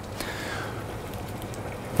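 Steady, even hiss with a faint crackle from coarse salt heating in a very hot, dry frying pan on the stove.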